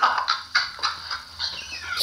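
A man laughing, loudest and high-pitched at the start, then trailing off into quieter broken laughs.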